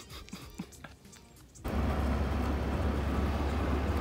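Quiet at first, then about one and a half seconds in a sudden switch to a loud, steady low rumble and hiss of a bus engine running by the roadside.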